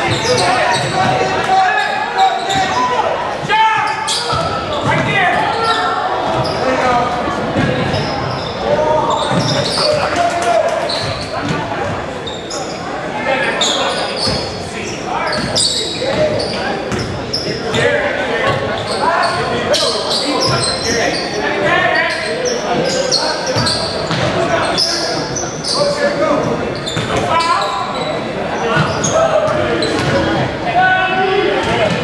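A basketball being dribbled on a hardwood gym floor, with repeated bounces among the shouts and talk of players and spectators in a large echoing gymnasium.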